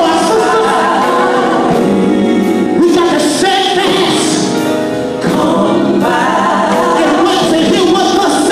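A gospel vocal group singing into microphones, the voices amplified through a sound system, with a brief drop in level about five seconds in.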